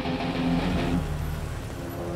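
A car driving up and slowing to a stop, with its engine and tyres heard. It is a little louder in the first second and eases off toward the end.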